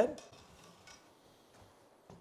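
Near silence: quiet room tone with a couple of faint small clicks, just after a voice stops at the very start.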